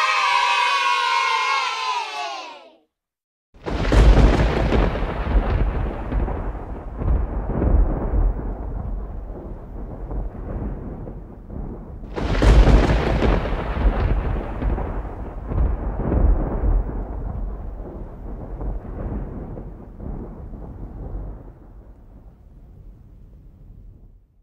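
First a sustained pitched tone slides gently down for about three seconds. Then, after a short gap, come two long rolls of thunder-like rumble, each starting sharply and dying away over about eight seconds.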